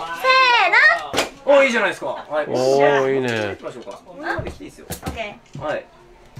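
Excited voices making high, drawn-out exclamations, with a sharp knock about a second in and another near the end.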